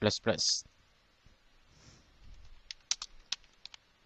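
Computer keyboard typing: a quick run of about eight sharp key clicks in roughly a second, starting near the end.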